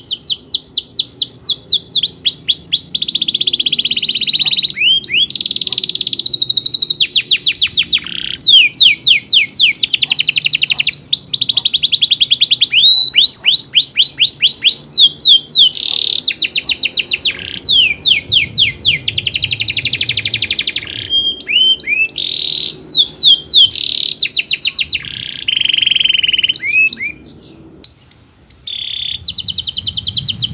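Domestic canary singing a long, loud song of rapid rolling trills and quick repeated sweeping notes, broken only by a short pause about two seconds before the end.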